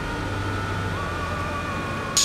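A steady low hum with thin steady high tones. A faint, slightly wavering high tone comes in about halfway through.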